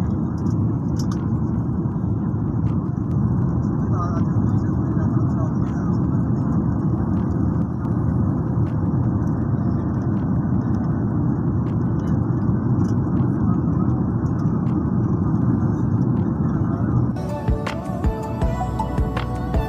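Steady low cabin noise of a jet airliner in flight, the engines and rushing air heard from a window seat. Music comes in about a second before the end.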